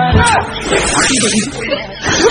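A hissing noise lasting about a second, mixed with voice sounds.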